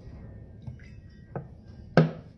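Cooking oil poured from a bottle into a cast-iron skillet of melted lard, with a low steady pour, two light knocks partway through and a sharp clack right at the end.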